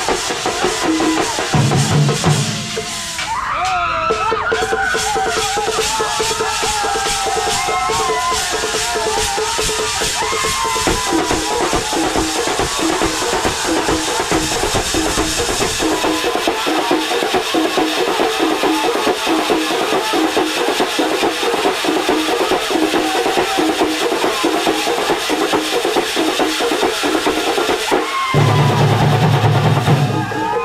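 Thambolam drum band playing: fast, dense drumming on large bass drums and other percussion. A wavering melody rides over the drums for several seconds after the start, and a deep bass note sounds near the beginning and again near the end.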